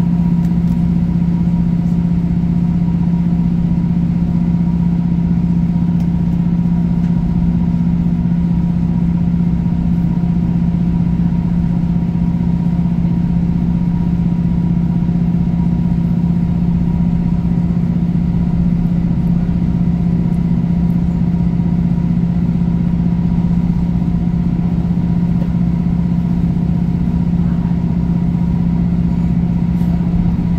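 Underfloor diesel engine of a Class 156 Super Sprinter train (a Cummins NT855) droning at a steady speed while the unit runs along, with the rumble of the wheels on the track, heard from inside the passenger saloon.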